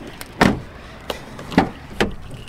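A few short knocks and clunks of a car door, the loudest about half a second in and again about a second and a half in, as the SUV's rear door is shut and the front door handled.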